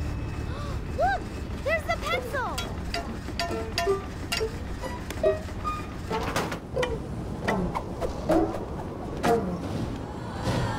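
Cartoon machine sound effects: irregular clicks and clanks over a continuous low rumble, with short rising-and-falling whistling tones in the first few seconds and background music.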